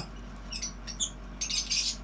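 Caged budgerigars chirping in short, high calls, a few scattered ones and then a quick run of chirps near the end.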